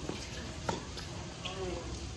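Tennis ball struck by a racket during a rally: a sharp pop a little under a second in, with fainter knocks of other hits or bounces near the start and about a second in.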